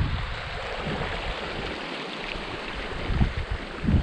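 Water rushing out through a breach opened in a beaver dam: a steady hiss, over a low, uneven rumble.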